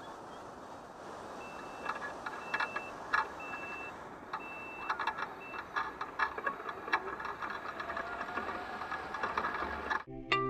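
S12X Vita Monster mobility scooter backing up and turning, its reversing beeper sounding in a run of short high beeps of uneven length, with knocks and rattles from the scooter moving over rough grass. Near the end a faint rising motor whine as it drives forward. Water rushes over a weir underneath.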